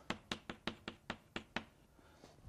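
Chalk tapping against a blackboard while writing: about eight quick, sharp taps in a second and a half, then it stops.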